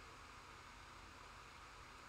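Near silence: faint microphone hiss and low hum.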